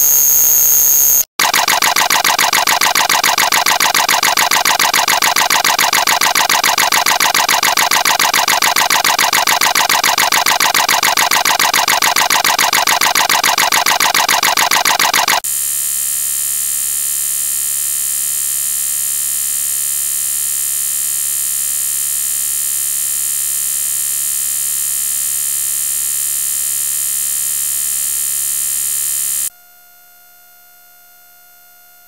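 Loud electronic buzzing tone, rich in overtones. It drops out briefly about a second in, then pulses rapidly for about fourteen seconds. About halfway through it changes to a steady, slightly quieter drone, which cuts off suddenly near the end.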